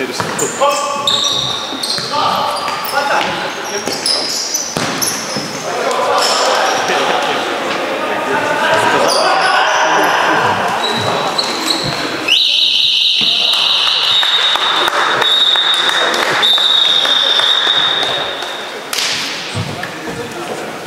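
Futsal play echoing in an indoor sports hall: ball kicks and bounces, shoe squeaks and players' shouts. About twelve seconds in, a long, shrill referee's whistle starts loud and carries on more weakly for several seconds.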